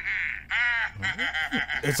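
A man's high-pitched, squeaky vocal sounds: a held squeal, a quick rise and fall in pitch, then rapid pulses in the second half.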